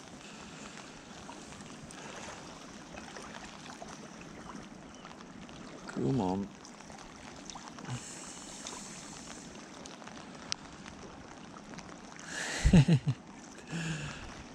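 Steady wash of wind and lake water lapping at the shore. A short vocal grunt comes about six seconds in, and a louder burst of voice near the end.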